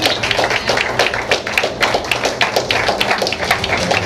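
Small club audience applauding: many separate hand claps at an irregular, quick pace, over a faint steady low hum.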